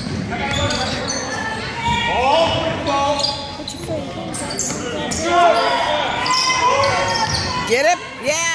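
Basketball game on a hardwood gym court: the ball dribbled and sneakers squeaking in short arched chirps, over the chatter of spectators, all echoing in a large hall.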